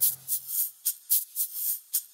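A break in an acoustic song: the last guitar chord dies away in the first half second, leaving a shaker playing a steady rhythm of about four strokes a second on its own.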